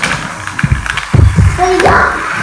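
Dull low thuds and rumbling in the middle, then a short rising vocal sound from a child near the end.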